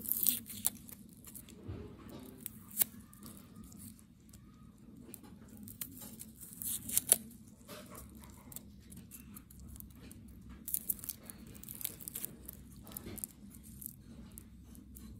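Small knife paring the dry, papery skin off garlic cloves: irregular crackling and tearing of the husk with sharp clicks of the blade, loudest in a cluster about halfway through.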